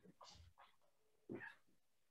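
Near silence: room tone of a video-call line, with a couple of faint, brief soft noises.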